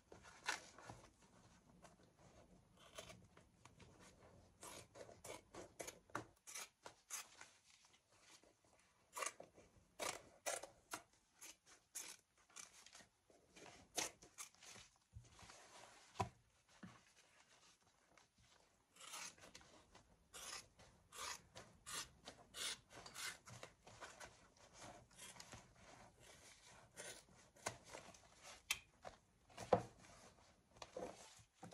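Scissors snipping through a handbag's leather in runs of short, quick cuts with pauses between, the leather rustling as it is handled.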